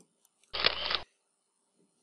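A short slide-transition sound effect, a single noisy burst about half a second long with an abrupt start and stop, heard as the lecture moves to the next slide.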